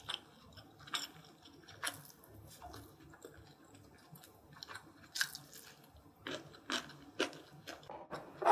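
Close-miked chewing of a mouthful of braised short ribs and rice: soft wet mouth sounds with scattered short smacks and clicks, a few of them louder in the last couple of seconds.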